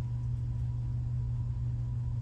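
Steady low hum that does not change, with no other distinct sound.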